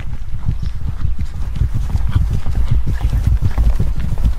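Horses' hooves clip-clopping on the ground in a rapid, continuous run of hoofbeats, a sound effect of riders travelling on horseback.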